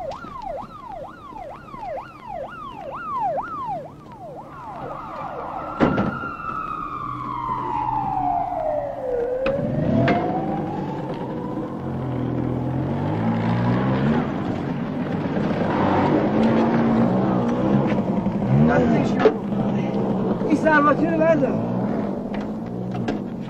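Emergency-vehicle siren: a fast repeating yelp, falling in pitch on each cycle, that changes at about five seconds into one long slow wail, falling and then rising again. The wail fades out under other mixed sound.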